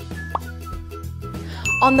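Soft background music, with a single bright ding near the end, a sound effect marking a new text box appearing on the slide.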